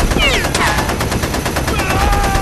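Sustained rapid machine-gun fire sound effect, with a falling, shrieking cry laid over it twice, about a quarter second in and again near the end.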